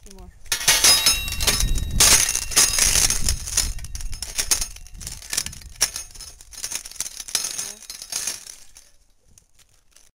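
Hand-crank nutcracker crushing walnuts: a dense run of cracks and crunches of breaking shells. It starts about half a second in, is loudest in the first few seconds and thins out near the end.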